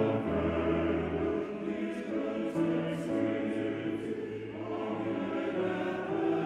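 Male choir singing in several parts, sustained chords with the sung words' sibilants audible.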